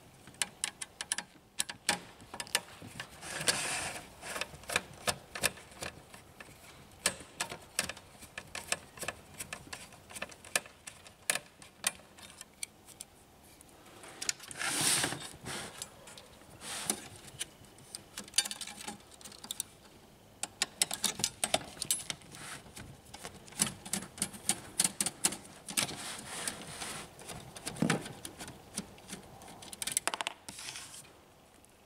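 A screwdriver is backing small screws out of a laser printer's sheet-metal shield and frame, making a run of quick metallic clicks and ticks. There are a few louder handling rattles from the tool and loosened metal parts: a few seconds in, halfway through, and near the end.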